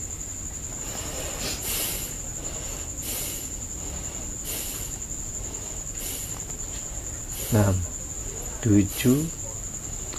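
Crickets chirping in a steady high trill throughout. Over them come short breathy puffs about every second and a half: a person breathing forcefully in a counted eleven-breath exercise.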